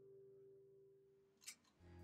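The last chord of a Tanglewood acoustic guitar dying away to near silence, with a brief click about one and a half seconds in.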